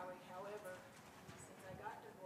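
Faint, off-microphone speech from a person in the audience, with a few soft knocks in between.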